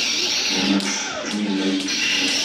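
Sound effects of a staged lightsaber duel: saber hum and swing noise that cuts in and out, with sharp clash hits less than a second in and near the end, over background music.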